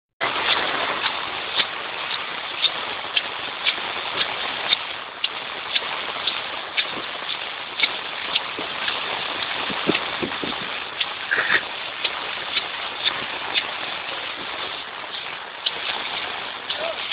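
Steady hiss of heavy rain, with footsteps on wet paving ticking at an even walking pace of about two a second.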